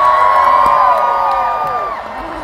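Large concert crowd screaming and cheering as a song ends, many voices holding high shrieks together that trail off near the end.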